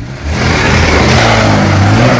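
A car engine running with a loud, steady low drone that starts just after the beginning.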